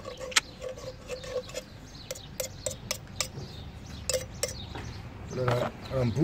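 A metal hand tool scraping and clicking against a soot-caked metal intake pipe, chipping off carbon buildup, in a run of irregular sharp clicks.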